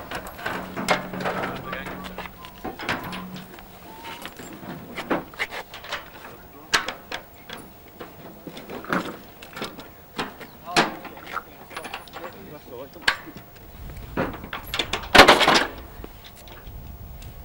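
Irregular sharp metallic clicks and knocks of hand tools and fittings being worked on a metal store, with low voices underneath. A louder rushing burst comes near the end.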